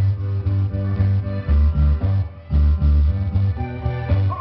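Upbeat Latin dance music with a heavy, regular bass beat and a plucked guitar line.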